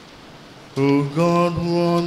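After a brief hush, a priest's voice starts about three-quarters of a second in, chanting the Mass's opening prayer into a microphone on steady, held reciting notes.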